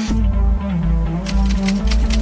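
Electronic background music with a steady bass beat. A little over a second in, a rapid run of typewriter-style key clicks starts, about six a second: a typing sound effect for on-screen text appearing letter by letter.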